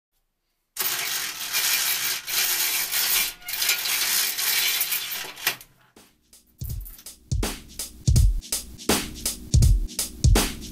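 A few seconds of dense, rattling, scraping noise, then background music with a steady electronic drum beat coming in about six and a half seconds in.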